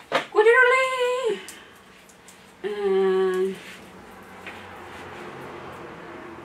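A cat gives one long, drawn-out meow of about a second, just after a sharp click. A couple of seconds later a woman hums a short low note.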